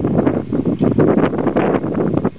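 Wind buffeting the camera microphone: an irregular, gusty rumble.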